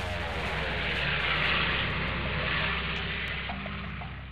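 Propeller aircraft flying past: an engine drone whose pitch falls as it passes, swelling and then fading away.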